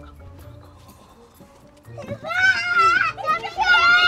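Quiet for about two seconds, then several very high-pitched voices shrieking and squealing in excitement, with pitch that swoops up and down.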